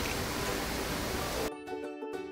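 Steady hiss of room noise, then about one and a half seconds in, the sound cuts abruptly to background music with clear pitched notes.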